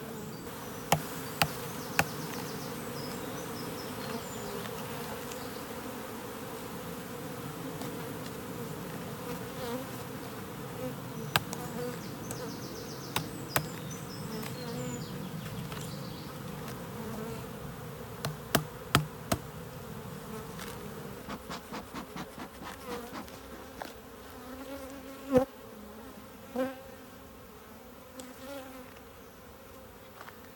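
Honeybees buzzing in a steady hum around an open hive, with scattered sharp wooden knocks and clicks as the hive frames are handled. The loudest knock comes near the end, as the buzzing eases off a little.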